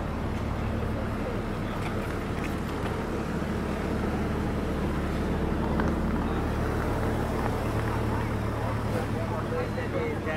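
Steady low engine drone made of several even hums, with people talking nearby over it.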